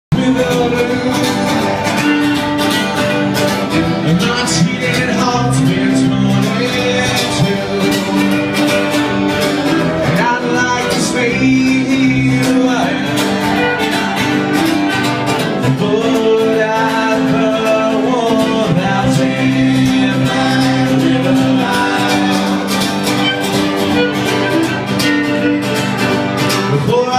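Live acoustic bluegrass band playing: two strummed acoustic guitars keeping a steady beat under a fiddle.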